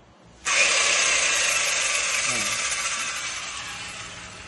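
Crown electric chainsaw switched on and running free, not cutting. Its motor and chain noise starts suddenly about half a second in, then slowly dies away.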